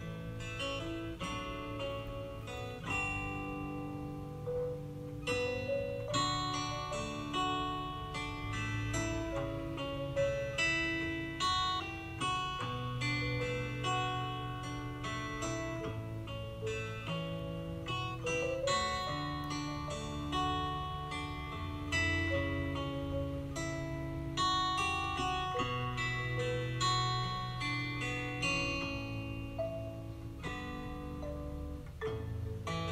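Instrumental background music: a plucked-string melody, guitar to the fore, over a steady bass line.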